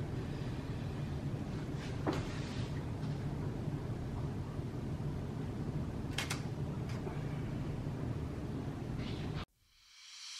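Camera shutter clicks over a steady low room hum: one sharp click about two seconds in and a quick double click about six seconds in. All sound cuts off just before the end.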